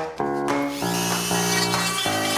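Handheld rotary tool fitted with a small milling bit, starting up about half a second in and running with a steady high-pitched whine as it is held to a small piece of wood.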